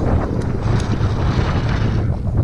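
Wind buffeting the camera microphone in a heavy rumble, over an RC rock crawler working its way up bare rock, with a few light clicks.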